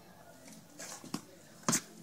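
A single sharp crack of a cricket bat striking the ball, near the end, with a fainter tick about a second in.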